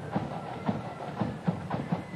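Marching flute band playing: a steady drum beat about twice a second, with the flutes faint above it.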